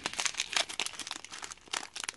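Small plastic zip bags of resin diamond-painting drills crinkling as they are handled and flipped through by hand: an irregular run of crackles.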